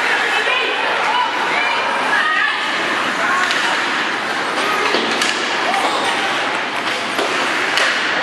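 Ice hockey game sounds in a rink: steady chatter of spectators' voices, with a few sharp clacks and knocks from sticks, puck and boards during play, the clearest around the middle and near the end.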